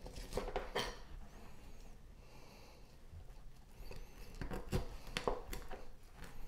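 Knife cutting through raw chicken wing joints on a plastic cutting board: scattered faint clicks and taps of the blade, a couple near the start and a cluster in the second half.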